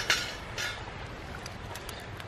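Steady outdoor wind-and-surf noise, with a short rattle right at the start and a few faint clicks as freshly poured charcoal settles in the pit.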